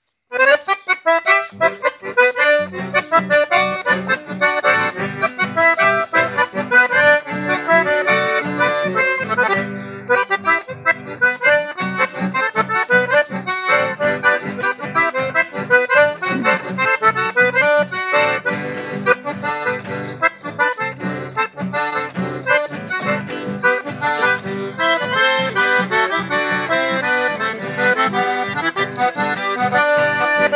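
A chamamé played live on accordion with acoustic guitar accompaniment. The accordion starts the tune and carries the melody, and the lower rhythmic accompaniment joins about two seconds in.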